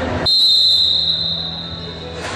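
Referee's whistle: one long, steady blast held for nearly two seconds, the signal that the penalty kick may be taken.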